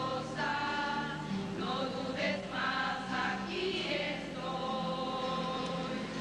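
A choir of children's voices singing a hymn, with long held notes.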